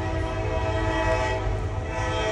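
Train horn sounding a steady chord of several tones, held throughout, over a low rumble.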